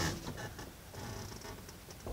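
A 1990 service truck's 366 big-block gasoline V8 idling, heard from inside the cab as a faint, steady low rumble. A knock from the phone being handled comes right at the start.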